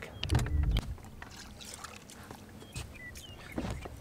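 Faint knocks and clicks of a small fishing boat and tackle on the water, with a brief voice-like hum about half a second in.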